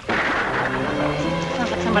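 A sudden gunshot on a 1950s western TV soundtrack, followed at once by a dramatic music cue of sustained chords, signalling that someone is in trouble.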